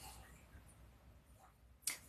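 Near silence: faint room tone, then a short breath sound near the end.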